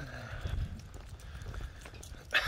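Footsteps walking on a paved path, heard as a few low thumps and light scuffs, with some handling or wind rumble on the microphone.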